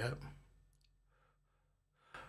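A man's voice finishing a word, then near silence broken by a faint click just under a second in.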